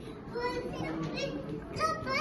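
Children's and adults' voices in the background, indistinct chatter with no clear words.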